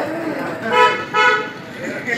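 Vehicle horn beeping twice in quick succession, two short steady toots.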